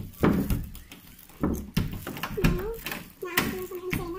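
A woman talking in short bits, with a few low thumps in the first two seconds.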